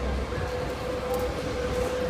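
Railway noise: a steady low rumble with a constant hum, from a train at the station.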